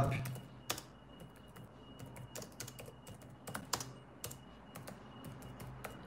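Typing on a keyboard: irregular key clicks, a few at a time with short pauses, over a faint steady hum.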